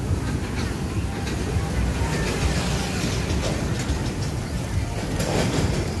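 Steady low rumble of outdoor street background noise, with a few light clicks.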